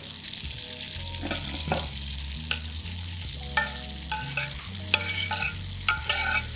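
Fried butternut squash slices tipped from a platter into an All-Clad D3 stainless steel fry pan of buttered linguine, over a faint steady hiss. Several sharp clinks of utensils and platter against the metal pan come in the second half, some ringing briefly.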